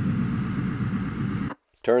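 Steady low rumble of a vehicle driving, engine and road noise as heard from inside the cab. It cuts off suddenly about one and a half seconds in.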